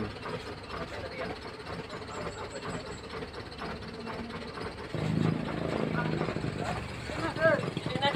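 A vehicle engine running at idle, a low steady rumble that grows louder about five seconds in, under people's voices.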